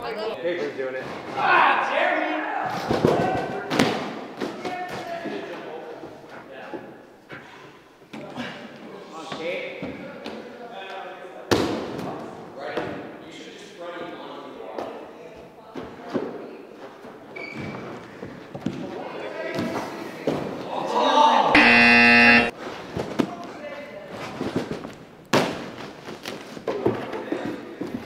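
Thuds and bounces of a person jumping on trampolines and landing on padded mats, with a sharp impact about 11 seconds in. About two-thirds of the way through, a loud, steady buzzer-like tone sounds for about a second.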